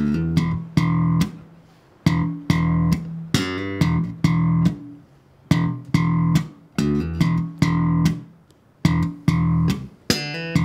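Enfield Lionheart electric bass guitar playing a simple beginner slap riff slowly. Pairs of thumb-slapped open E notes alternate with short slapped or popped hammer-ons, and there are brief muted gaps between the bars.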